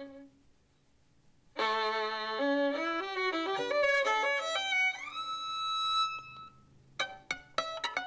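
Solo violin: a held note fades into a brief pause, then a bowed phrase of quickly changing notes rises to a long held high note. From about seven seconds in, the violin switches to rapid plucked pizzicato notes.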